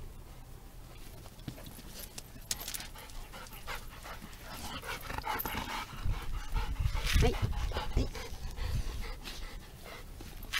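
Golden retriever panting close to the microphone. In the second half, loud low rumbling and bumps as the dog's fur rubs against the camera.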